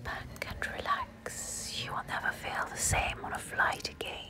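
ASMR-style whispering close to the microphone, breathy and hissy, broken by a few short sharp clicks.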